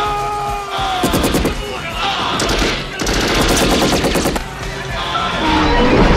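Film action-scene soundtrack: several bursts of rapid automatic gunfire over a music score, with a loud explosion rumble starting right at the end.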